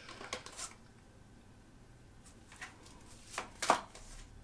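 Tarot cards being shuffled and handled: a few soft flicks in the first second, a quiet stretch, then two louder card flicks near the end.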